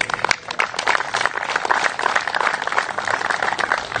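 Audience applauding: many people clapping at once in a dense, steady patter.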